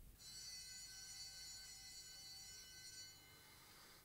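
School bell ringing faintly: a steady high ringing that starts just after the beginning and stops about three seconds in, signalling the start of the first lesson.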